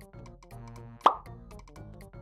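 Background music, with one short plop sound effect about a second in.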